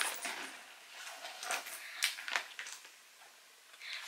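Soft rustling and a few light clicks of a hand rummaging in a fabric backpack pocket and taking out a small glass perfume bottle. The handling falls almost silent just after three seconds in.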